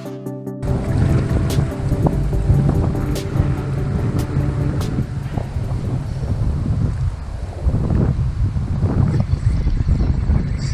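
Electronic background music that cuts off under a second in, then gusty wind buffeting a GoPro's microphone as a low, uneven rumble.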